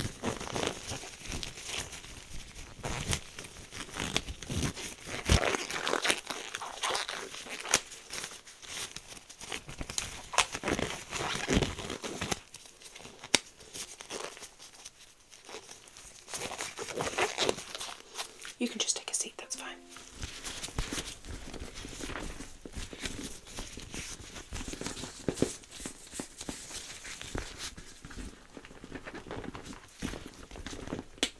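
Close-miked nitrile gloves being pulled on and worked over the hands, crinkling and crackling with many small irregular snaps. Near the end, gloved hands handle a leather handbag.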